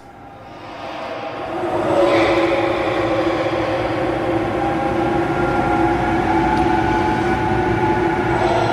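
A dark ambient drone: a low rumble with a few steady held tones, fading in over about two seconds and then holding level.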